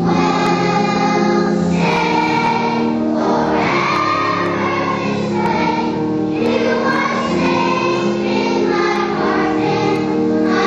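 Children's choir singing together, with notes held for about a second each as the melody moves.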